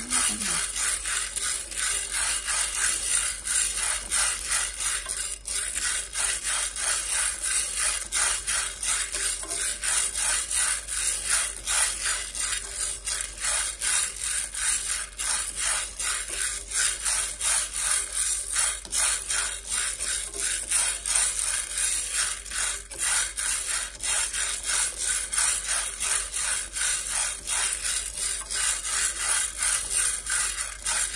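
Dry mung beans being stirred in a hot metal pan with wooden chopsticks: a steady, rhythmic scraping rattle of beans sliding and tumbling against the pan as they dry-roast.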